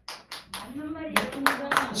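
Audience clapping: a short, irregular round of applause from a small group, getting denser about a second in, with a man's voice underneath.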